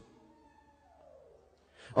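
Near silence in a church, with one faint high whine gliding down in pitch through the middle; a man's voice starts speaking right at the end.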